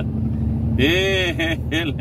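Steady low rumble of a truck's engine and road noise heard inside the moving cab. Over the second half a man's voice draws out long, wavering 'e-e' sounds in a half-sung tone.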